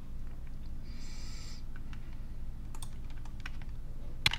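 Scattered clicks from a computer keyboard and mouse, with a brief rustle about a second in and a few quick clicks in the second half, over a steady low hum.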